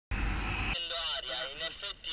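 Sound cuts in with a short, loud blast of rushing noise. A man's voice speaking Italian follows over a steady high-pitched hum.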